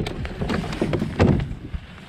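Handling noise as a 12-foot plastic fishing kayak and an aluminium paddle shaft are moved about on dry grass: a quick, uneven run of knocks and scrapes with rustling, the loudest knocks a little past the first second.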